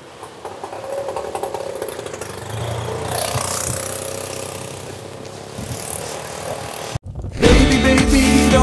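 Outdoor street noise with an auto-rickshaw engine running and passing close by, loudest around the middle. About seven seconds in, the sound cuts out briefly and loud music starts.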